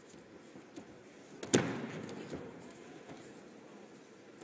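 A single sharp smack about one and a half seconds in, echoing briefly in a large hall, over a low steady murmur of arena ambience, with a couple of fainter knocks around it.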